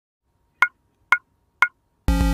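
Three short, sharp click sound effects, evenly spaced about half a second apart, each with a brief high ring.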